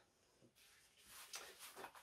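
Near silence, then faint scraping and rustling in the second half as the emptied differential housing is handled with gloved hands.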